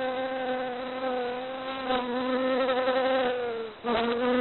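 Honeybees buzzing: one steady, slightly wavering hum that dips briefly just before the end and then picks up again.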